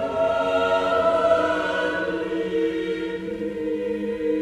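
Mixed chamber choir singing slow, held chords, the harmony moving to a new chord a little past halfway through.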